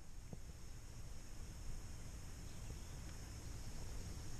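Quiet outdoor ambience: a faint steady low rumble and hiss, with one small click about a third of a second in.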